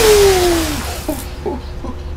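A loud splash as a body is knocked into a swimming pool, with a long vocal cry falling in pitch over it. After the splash dies away, about a second in, come a few short vocal sounds.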